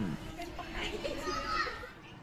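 Quiet chatter of a group of schoolchildren's voices, fading near the end.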